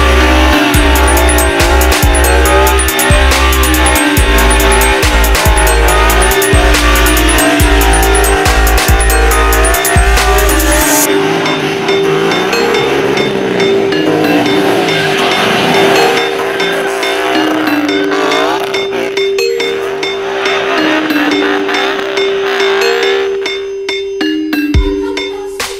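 A Ford Performance FP350S Mustang's V8 revving up and down during a smoky burnout, with tire squeal, mixed with loud backing music. The music's heavy beat drops out about halfway through, leaving a held note under the engine revs.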